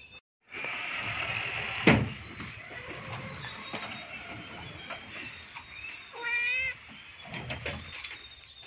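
A tabby domestic cat meowing, with one short, wavering meow about six seconds in. A single sharp knock sounds about two seconds in.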